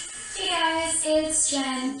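A high female voice singing in long, held notes that step from one pitch to another.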